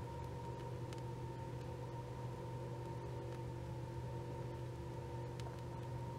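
Steady low background hum with a faint, thin high tone held over it, and a few faint ticks.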